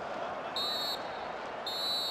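Referee's whistle blown in two short, high blasts, the start of the full-time whistle ending the match, over stadium crowd noise with booing.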